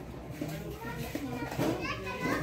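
Background chatter of people talking, with a child's high voice coming in during the second half.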